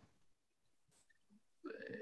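Near silence on a video call, with a faint voice sound beginning near the end.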